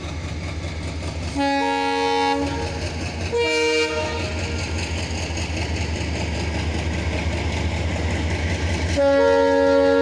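Diesel locomotive horn sounding three times over the steady low rumble of the locomotive's engine as the train pulls out. The first blast lasts about a second, the second is short, and a long third blast starts near the end. The sound grows louder as the locomotive draws closer.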